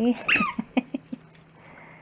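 Miniature schnauzer giving a short high whine that falls in pitch, followed by a few quick, wet licking sounds close to the microphone.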